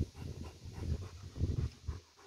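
German Shepherd dog panting close to the microphone, a run of quick, uneven breaths.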